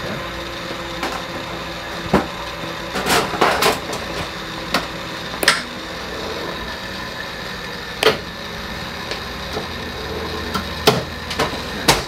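Sharp clicks and clunks from an X-ray machine's tube head as it is moved by hand and locked into position, about eight knocks at irregular intervals. A steady electrical hum runs underneath.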